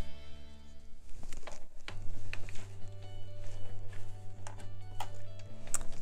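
Background music, with a home sewing machine stitching felt underneath: short clicks throughout and a steady motor hum from about two seconds in until shortly before the end.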